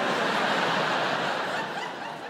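Large theatre audience laughing together, a dense wash of many voices that gradually fades toward the end.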